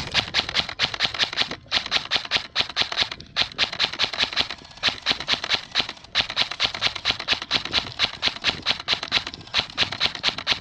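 Airsoft electric rifle (Krytac M4 CRB) firing in rapid strings of sharp snapping shots, about five a second, with brief pauses between strings.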